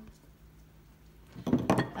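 Large glass candle jar clinking and knocking as it is picked up off a table, a quick cluster of clinks about a second and a half in.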